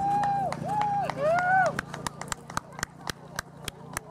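A person's voice calling out three times in long, high, rise-and-fall cries. Then comes a run of hand clapping, about six claps a second.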